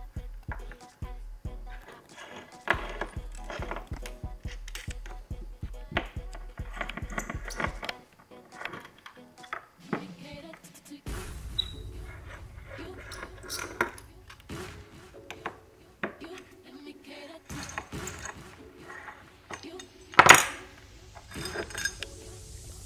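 Small metal clicks and clinks as the screws of a metal electronics case are backed out with an Allen T-handle and set down on a desk, with one loud sharp clack near the end. Background music plays under it.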